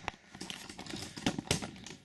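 Handling noise: a few light, irregular clicks and taps with soft rustling as hands move the duct tape, scissors and camera about.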